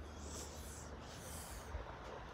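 Handling noise on a phone microphone held against clothing: a low rumble with two soft hissing swishes about a second apart.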